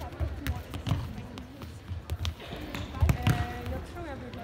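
A futsal ball being kicked and players' shoes thudding on a hard sports-hall floor: a string of irregular knocks echoing in the hall, the loudest about three seconds in.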